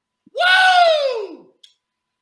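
A single loud 'woo!' cheer from one voice, a whoop of celebration about a second long that rises briefly and then falls in pitch.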